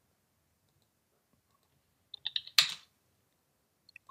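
Near silence, then a few quick computer keyboard keystrokes a little past halfway, the last one louder.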